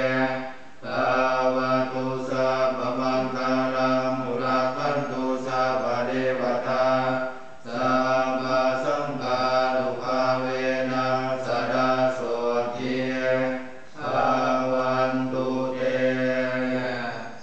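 Group of Buddhist monks chanting Pali blessing verses in unison on a steady low pitch, with short breaks between lines about every six to seven seconds.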